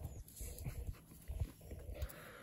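A young lamb right at the microphone making a few faint, brief sounds, among low thumps.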